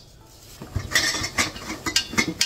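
Metal tube sections of a clothes rack clinking and knocking against each other as they are handled: a quiet start, then a quick series of about four sharp clinks from the middle on.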